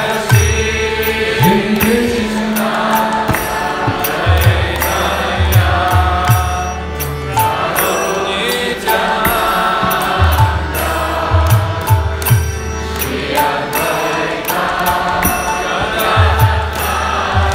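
Kirtan: a mantra chanted to a harmonium, with a drum and small hand cymbals keeping a steady beat.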